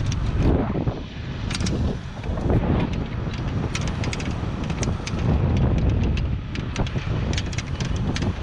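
Wind buffeting an open-air camera microphone, a steady low rumble, with many irregular sharp clicks and ticks from gear being handled.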